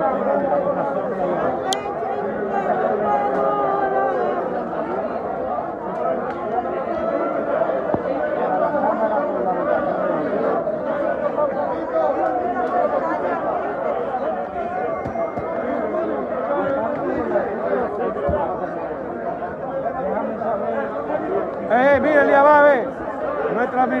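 Many people talking at once in a large chamber, a steady hubbub of overlapping voices. A nearer voice rises briefly near the end.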